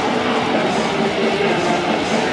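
A death metal band playing live and loud, the electric guitar riffing to the fore.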